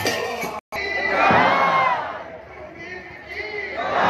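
Kirtan music with rhythmic percussion breaks off, and after a brief gap a crowd of devotees shouts together in one loud, rising-and-falling call about a second in; a second shout starts near the end.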